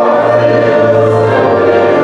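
Church congregation singing a hymn in long held notes, moving to a new note about a second in.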